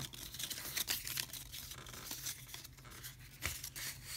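Paper crinkling and tearing in a run of irregular rustles as a white paper band is pulled and ripped off rolled posters.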